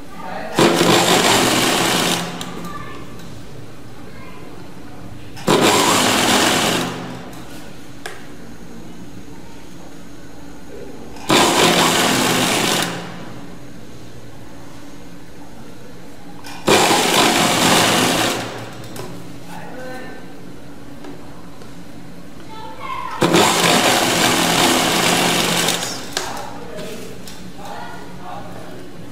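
Sewing machine stitching in five short runs of about two seconds each, separated by pauses of several seconds as the fabric is repositioned.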